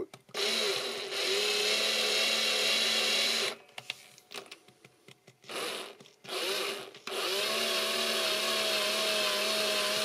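Electric drill with a quarter-inch brad point bit boring into a Brazilian rosewood guitar bridge. It runs steadily for about three seconds and stops. Two short bursts follow, then a longer steady run from about seven seconds in.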